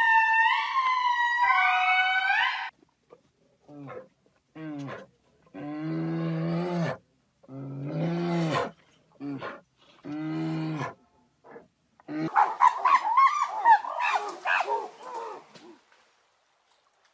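Wild animal calls in turn: a deer stag's high, rising calls for the first few seconds; then a string of short, low calls from a brown bear; then a harsh, rough run of gorilla calls near the end.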